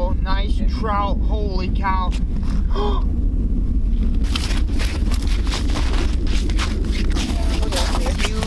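Wind rumbling on the microphone throughout, with low voices for the first three seconds. From about four seconds in, a run of irregular crunches: boots stepping on snow-covered ice.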